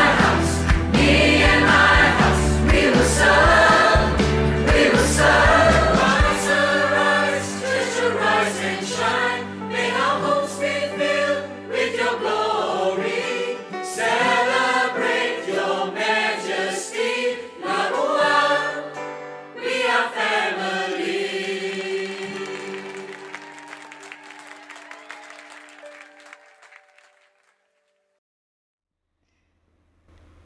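A group of voices singing a Christian worship song with band accompaniment. The drums and bass drop out about six seconds in, leaving the singing over held chords, and the music fades out near the end.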